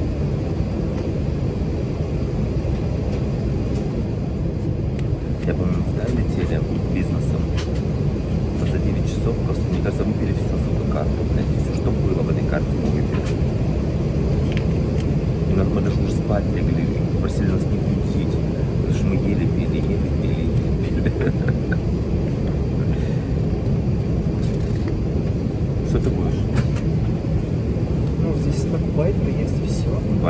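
Steady low drone of an airliner cabin, with paper pages of a menu booklet rustling and clicking now and then as they are turned.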